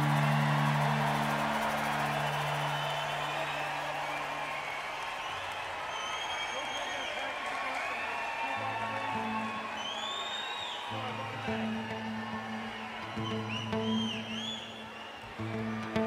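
Concert crowd cheering, with several loud whistles, as the band's last chord dies away. About nine seconds in, the band starts the quiet intro of the next song, with low bass notes.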